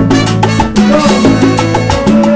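Salsa band playing, with bongos struck by hand over a bass line and trumpets, in a dense, steady rhythm.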